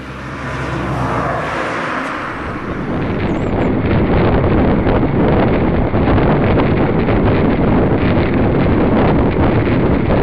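Wind rushing and buffeting on the microphone of a camera riding along on a moving bicycle, loud and steady from about four seconds in; before that, a softer rushing noise swells.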